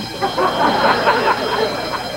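Studio audience laughing for most of the two seconds, over a steady high-pitched electronic alarm tone.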